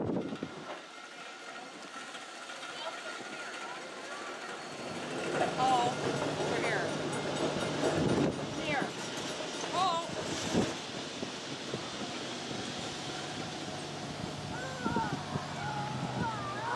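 Vintage electric streetcar rolling across a road crossing, with a steady electric hum and a few sharp wheel knocks, while a trolleybus drives up close near the end. Voices of people in the background.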